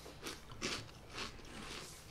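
People biting and chewing crunchy tangy barbecue puffs: several faint, crisp crunches.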